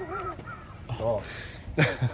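A man laughing hard in short, breathless bursts, with the loudest burst near the end.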